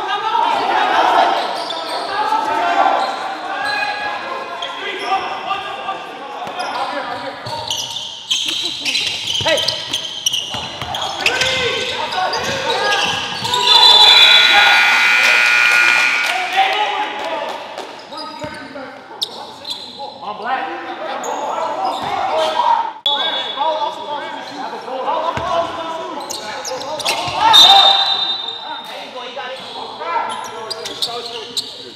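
Shouting voices and a basketball bouncing on the court, echoing in a gymnasium during a game. About halfway through, a loud high tone is held for about three seconds.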